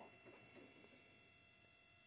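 Near silence, with a faint steady whine at several fixed pitches from the running high-voltage power supply built on ignition coils that drives the e-beam tube.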